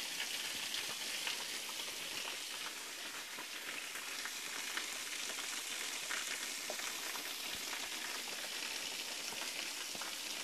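Waterfall: a steady hiss of falling, splashing water with faint crackles.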